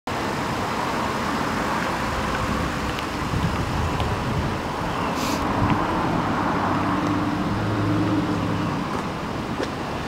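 Steady outdoor road-traffic noise, with a low vehicle engine hum swelling between about six and nine seconds in and a brief hiss just after five seconds.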